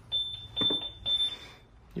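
A single steady, high-pitched electronic beep lasting a little over a second as the front door swings open, with a few soft knocks from the door being handled.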